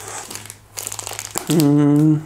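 Clear plastic packaging crinkling and rustling as a wrapped tablet case is handled. About one and a half seconds in, a man's voice comes in with one long held sound, louder than the rustle.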